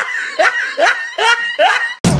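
A person laughing in about five short, rising syllables, ending abruptly.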